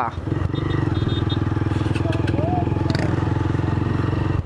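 Motorcycle engine running at a steady speed as the bike is ridden along the road, heard from on the bike, with rapid, even firing pulses and no change in pitch.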